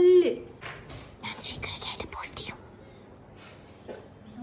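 A woman's voice: a word drawn out with a falling pitch at the start, then about two seconds of whispering.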